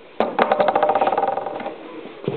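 A knock close to the microphone, then a rapid rattling buzz that lasts about a second and a half and fades out.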